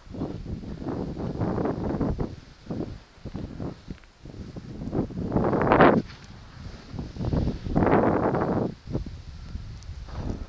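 Wind buffeting the camera's microphone in uneven gusts, with the two strongest gusts a little past halfway and again about three-quarters through.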